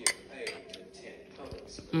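A few light clinks and taps of eating utensils against a ceramic plate and a small glass dish. The sharpest clink comes right at the start, with fainter taps after it and a dull knock about one and a half seconds in.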